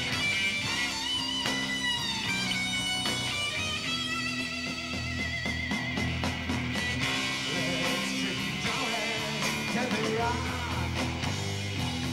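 Live rock band playing an instrumental break: electric lead guitar holding long notes with vibrato over bass guitar, rhythm guitar and drums.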